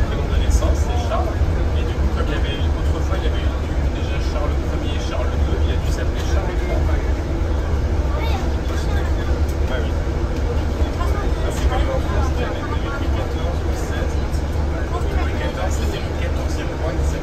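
Inside the upper deck of a moving double-decker bus: a steady low rumble of engine and road noise, with indistinct voices in the background.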